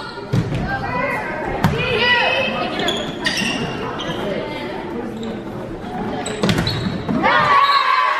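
A volleyball is struck several times during a rally, sharp hits off players' arms and hands, amid shouting voices. Near the end the voices swell into cheering as the point is won.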